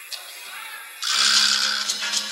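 Old videotape soundtrack coming up from silence: faint hiss with a thin high tone, then about a second in a loud rushing noise starts over a steady low hum, as the show's opening begins.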